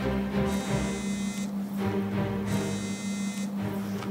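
Mobile phone ringing: two buzzy electronic rings, each about a second long, about two seconds apart, over background music with a low steady drone.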